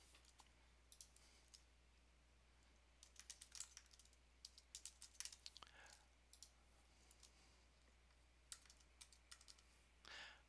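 Faint computer keyboard typing and clicks in short bursts: a few keystrokes about a second in, a quick run of keystrokes from about three to six seconds, and a few more near the end.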